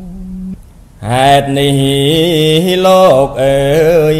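Khmer smot: a Buddhist monk chanting verse solo, unaccompanied, his voice wavering and ornamented on long held notes. A held note fades out at the start, and a new phrase begins about a second in.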